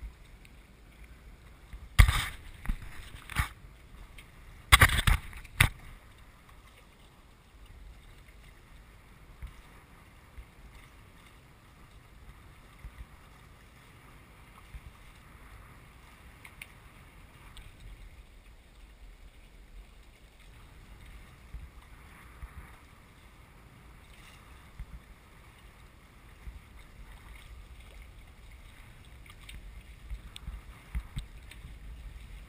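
Small sailing trimaran under way: steady wind and water rushing. Two clusters of loud sharp knocks come about two and five seconds in.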